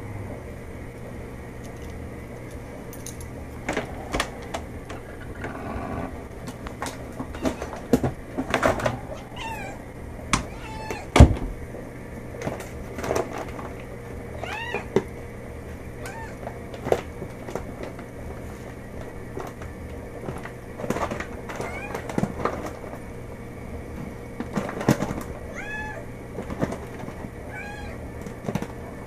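Domestic cat meowing again and again for food, each call rising then falling in pitch, among scattered knocks and clicks. The loudest is a sharp thump about eleven seconds in.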